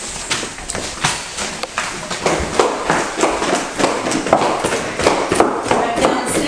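Quick footsteps going down a wooden staircase: a run of irregular taps and thumps that comes thicker after the first couple of seconds.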